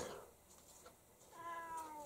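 A domestic cat meowing once: a single drawn-out meow beginning about a second and a half in, its pitch sliding down at the end.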